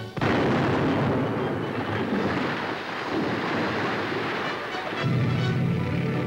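A rock-blasting explosion a fraction of a second in, followed by a long rumbling noise that slowly eases, as for a road-building demolition charge. From about five seconds in a low steady drone joins.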